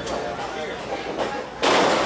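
A wrestler being taken over onto the ring mat, heard as one sudden loud thud near the end, after faint hall noise.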